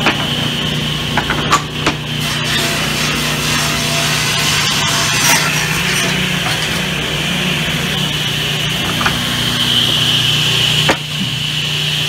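Circular saw running steadily while teak boards are fed through it and cut, with a few sharp knocks of wood on the bench.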